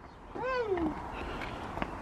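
A toddler's single high, sing-song call, rising then falling, about half a second long, with a faint click near the end.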